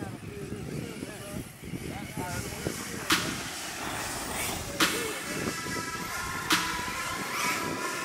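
Live trackside sound of electric RC cars racing on a dirt track, with distant voices. From about three seconds in, four sharp clicks, each trailed by a short high ring, come at even intervals about every second and a half.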